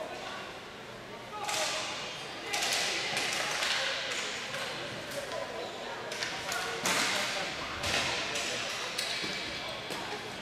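Ball hockey play on an arena floor: repeated sharp clacks of plastic sticks hitting the ball, the floor and each other, several of them loud, over indistinct shouting from players and spectators.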